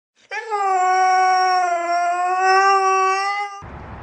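Siberian husky howling: one long, steady howl held at nearly the same pitch for about three seconds, cut off sharply near the end.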